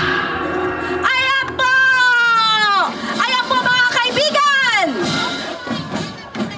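Large bossed gongs struck for a ceremonial opening, ringing faintly near the start. Over them, a voice gives loud, long, high cries that fall in pitch, twice.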